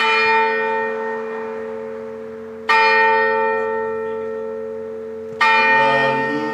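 A single church bell tolling: three strikes of the same pitch, about 2.7 seconds apart, each ringing on and slowly fading until the next.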